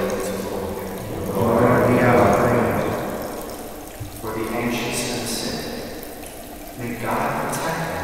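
A man's voice speaking in phrases separated by short pauses, echoing in a large church.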